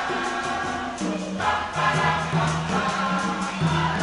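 Church choir singing a wedding song, the voices holding long notes that change every second or so.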